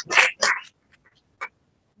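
A person's short, breathy laugh: two quick bursts without a clear pitch, followed by a pause of under a second and a half.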